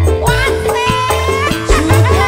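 Campursari band playing live: a drum-kit beat over deep bass, with a melody line that slides and wavers above it.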